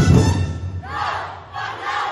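Parade drumming cuts off, then a group of dancers shouts a call in unison twice, each shout rising and falling in pitch.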